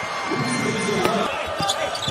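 A basketball bouncing a few times on a hardwood court, over the steady noise of an arena crowd.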